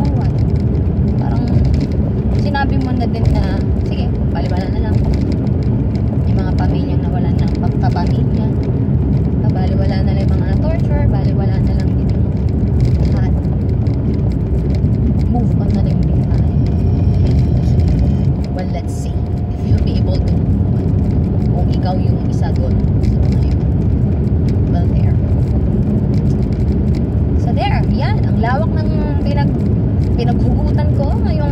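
Steady low rumble of road and engine noise inside a moving car's cabin, with a woman's voice talking over it at times. The rumble dips briefly for about a second a little past the middle.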